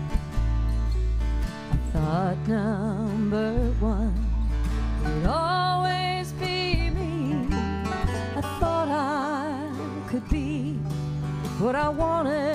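Bluegrass band playing live: acoustic guitars strumming over upright bass notes. About two seconds in a singer comes in, holding long notes with vibrato.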